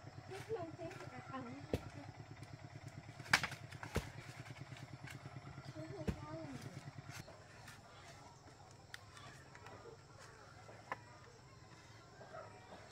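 Scattered sharp knocks and clicks of bamboo being handled and fitted on a bamboo coop wall, the loudest about three seconds in. A low, steady engine drone runs under the first seven seconds or so and then fades.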